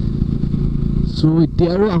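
Motorcycle engine running steadily under way. A man starts talking over it about a second in.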